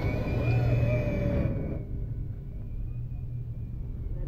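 Low, steady engine and road rumble of a moving bus heard from inside the cabin. It turns duller and quieter about a second and a half in.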